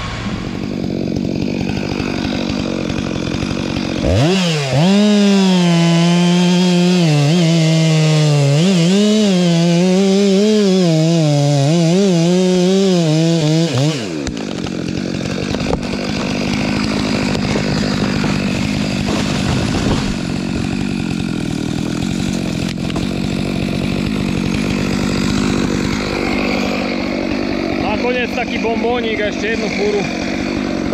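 Stihl MS 500i chainsaw cutting at full throttle for about ten seconds, its pitch dipping and recovering as the bar loads up in the wood, then dropping to a lower, steadier running note. Before the saw opens up, a forestry tractor's engine runs steadily underneath.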